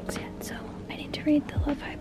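Soft, unintelligible whispering over faint background music with a few deep beats.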